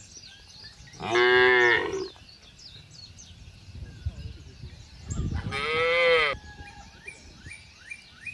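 Cattle mooing, two loud calls each lasting about a second, one about a second in and one about five seconds in. Small birds chirp faintly between and after the calls.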